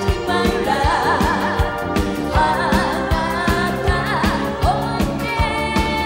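A woman singing a Japanese pop song live into a microphone, with vibrato on held notes, over band accompaniment with a steady drum beat.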